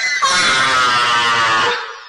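A single held musical note with many overtones, drifting slightly down in pitch for about a second and a half before fading out.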